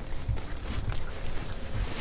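A few dull knocks and handling noise as a fishing landing net on its pole is moved about over the side of a small boat, with one knock about a third of a second in and two more near the end.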